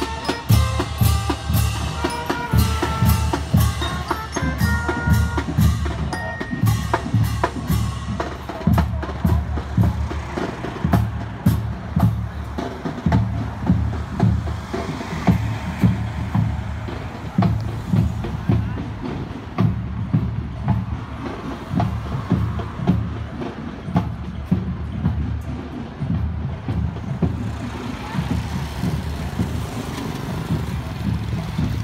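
School marching band passing: brass horns playing a melody over bass drum, snare and cymbals. The horns fade after about eight seconds, leaving the drums beating steadily.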